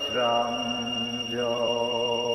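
A man's voice intoning in a drawn-out, sing-song, chant-like way, holding one pitch for over a second at a time. A steady high-pitched whine runs underneath.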